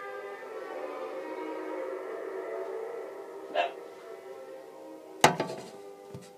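Orchestral music playing from a radio. About three and a half seconds in there is a short yelp-like sound. Near the end there is a sharp knock close to the microphone, the loudest sound, followed by a couple of smaller clicks.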